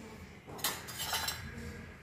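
A metal spoon scraping and clinking against a kadai as a curry gravy is stirred: a short run of clinks starting about half a second in and lasting under a second.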